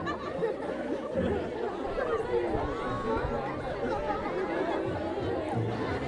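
Crowd of many voices chattering at once, from an audience of seated schoolchildren, with music playing underneath whose low notes become steady from about halfway through.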